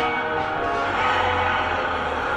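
TV drama soundtrack playing from a screen's speaker: sustained music with layered, bell-like tones.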